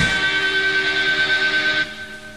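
Final chord of an indie rock song ringing out on electric guitars after the drums stop, with a high steady tone held over it. It fades and cuts off shortly before the end.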